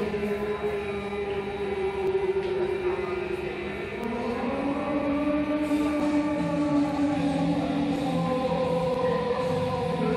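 Eerie, wordless choir-like chanting in long held notes that slowly drift in pitch, moving to a new chord about four seconds in.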